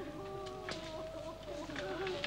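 Voices of a group of mourners without words: a long, held, wavering wail with a few short sharp vocal sounds over it.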